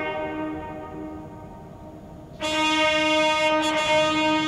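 Band of brass instruments playing long held chords. The music drops to a softer sustained note, then a loud full chord comes in about two and a half seconds in.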